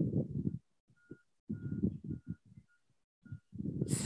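Wind buffeting the microphone in irregular low rumbling gusts, with a faint high beeping tone repeating unevenly in the background.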